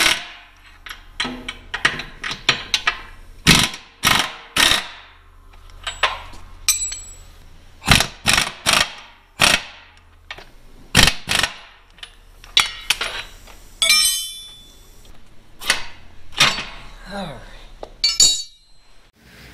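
Sharp metal clanks and knocks of wrenches and sockets on steel truck-frame bolts as the bolts are loosened, with a short rattling burst of a pneumatic impact wrench about fourteen seconds in. A low steady hum runs underneath.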